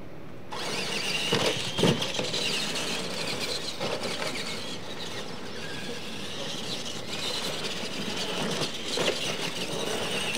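Old-school radio-controlled monster trucks launching off the line about half a second in and racing over dirt, their electric motors and gears whining in wavering pitch over the rush of tyres. A couple of sharp thumps come in the first two seconds, with more near the end.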